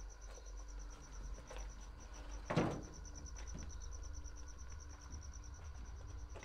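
A cricket chirping steadily at a high pitch, about five chirps a second, over a low hum, with one short louder thump about halfway through.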